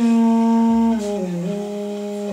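Duduk, a double-reed woodwind, playing a slow melody: a long held note, then about a second in the pitch slides down and settles on a lower note before stepping back up slightly.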